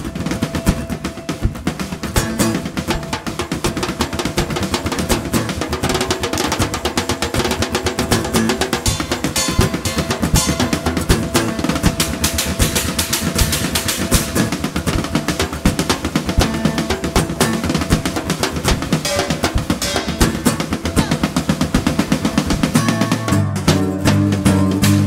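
Percussion solo on a junk-yard kit of hanging painted cans, tins and metal discs, struck in a fast, dense rhythm. An acoustic guitar comes back in near the end.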